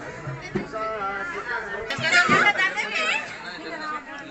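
Chatter of several people talking at once, with one higher-pitched voice standing out loudest about halfway through.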